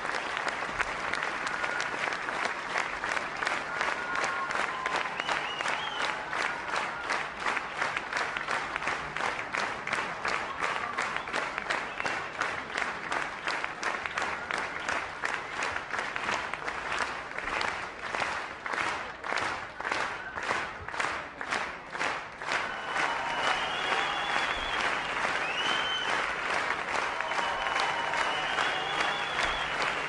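A large audience applauding. Around the middle the clapping falls into a steady rhythm in unison, at about three claps a second, before loosening back into general applause.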